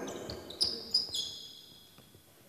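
Basketball shoes squeaking on a hardwood court as players shuffle and cut in a defensive drill: a few short, high squeaks in the first second or so, then fading away.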